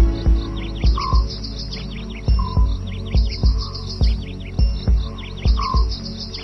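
Instrumental interlude of a Bollywood karaoke backing track: a steady beat of low thumps about twice a second, with groups of short, high, falling chirps over it.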